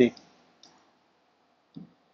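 Two faint taps of a stylus on an interactive smartboard's screen, one about half a second in and another near the end.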